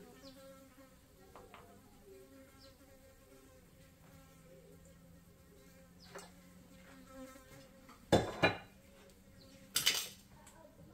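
Faint, steady buzzing like a housefly hovering, with a wavering pitch. Near the end come two short, loud clatters, the first a quick double knock.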